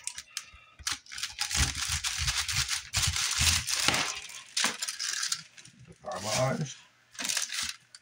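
A kitchen knife sawing through the tough top of a whole pineapple, in a run of rough, crunchy strokes lasting about three seconds. A few shorter scraping knocks follow as the fruit is handled and turned over.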